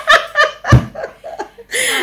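A woman laughing, a run of short breathy bursts.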